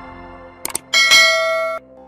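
Two quick click sound effects, then a bright bell ding that rings for under a second and cuts off abruptly: the sound effect of a subscribe button and notification bell being clicked.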